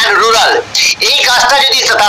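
Speech only: a man talking continuously, his voice compressed and slightly warbly as through a video-call connection.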